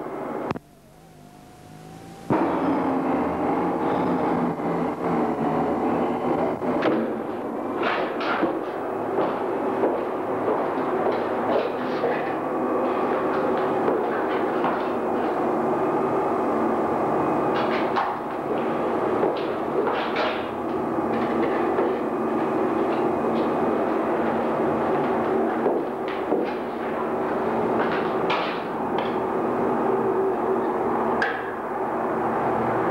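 A continuous hum made of several steady, slightly wavering tones, starting about two seconds in after a brief dip. It is broken by short knocks and clicks scattered through the rest.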